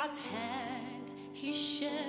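Gospel choir song: a female soloist sings a wavering line with vibrato over the choir's steady held chords, with a brief hiss about one and a half seconds in.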